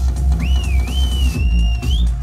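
Minimal techno played loud over a club sound system, with a deep, steady kick drum. About half a second in, a high wavering whistle rises over the music and holds to the end.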